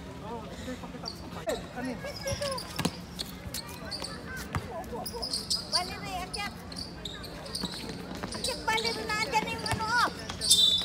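A basketball bouncing on a hard court several times, with players' voices calling out during play.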